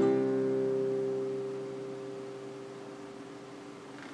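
The final chord on a nylon-string classical guitar ringing out and slowly dying away.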